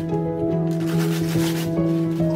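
Brown paper mailer bag crinkling and rustling as it is handled and opened, over background music with steady held notes.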